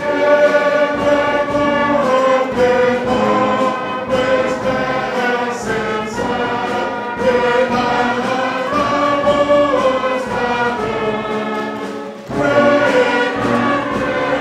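Many voices singing a hymn together in long, held notes, with a short pause between lines near the end.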